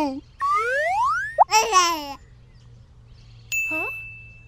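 Cartoon sound effects: a whistle-like glide rising in pitch about half a second in, then a brief squealing, voice-like sound, and near the end a high steady ding that holds on.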